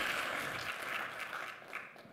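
Audience applause in a large hall, thinning out and dying away about a second and a half in.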